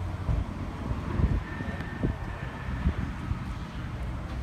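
Wind buffeting the microphone in irregular gusts over a low outdoor rumble.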